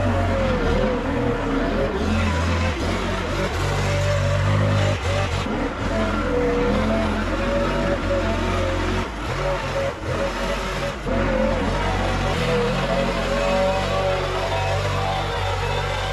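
Gas-powered backpack leaf blower running steadily, its engine pitch wobbling slightly as the throttle shifts, with brief dips in level around the middle.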